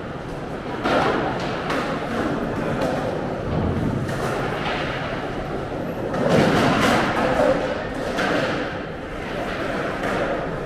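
Skateboards clacking and thudding on concrete at irregular intervals, with a louder cluster of impacts about six to seven seconds in, echoing under a concrete undercroft over the chatter of people.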